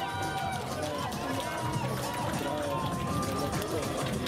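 Running footsteps on sand as a handler runs a trotting Arabian horse, over music and voices from the arena.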